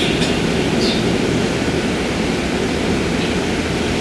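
Steady rushing noise, a hiss with a low rumble under it and no speech: the background noise of a lecture recording during a pause in the talk.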